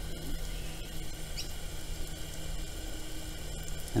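A steady patter of fine water spray falling onto dry garden soil, like light rain, with a few faint short high squeaks over it.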